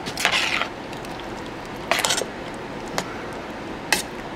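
Metal spoon stirring chopped tomatoes and garlic in a stainless steel pot, clinking against the pot four times.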